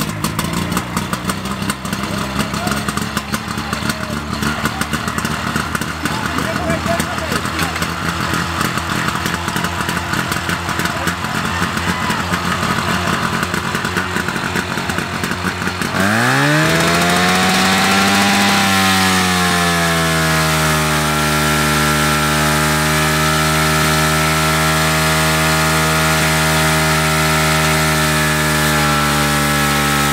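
Portable fire pump's engine running. About sixteen seconds in it revs up sharply, rising in pitch, then holds at a steady high speed.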